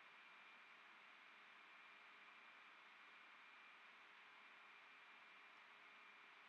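Near silence: a faint steady hiss with a thin, steady background tone.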